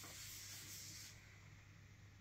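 Faint rubbing of a cloth applicator wiping finishing oil onto a spalted beech board, stopping about a second in.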